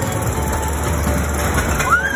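Small caterpillar-themed kiddie roller coaster train rolling along its steel track, with a steady rumble of wheels on rail.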